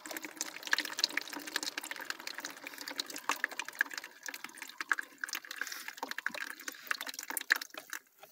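Running water trickling and splashing down into a drain, with many small drips and splashes. It cuts off suddenly at the end.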